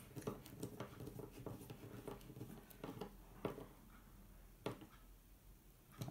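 Hand screwdriver tightening a screw into a wooden ant-nest frame, making faint irregular clicks and creaks. The clicks come thickly for the first three and a half seconds, then only a few more, with one sharper click near the end.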